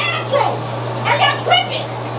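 A steady low hum and an even hiss of running water, with voices over it.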